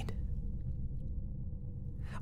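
A low, steady rumbling drone with almost nothing above it: the ambient background bed that runs under the narration.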